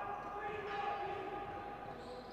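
A basketball being dribbled on an indoor court during play, with people's voices in the hall behind it.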